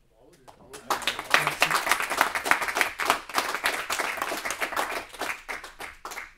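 A small audience applauding: clapping starts about a second in, stays dense, and thins out near the end into a few scattered claps.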